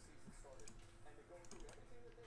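Faint clicking of a computer keyboard and mouse, a few scattered keystrokes and clicks.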